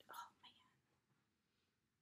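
Near silence, with a brief soft whisper in the first half-second.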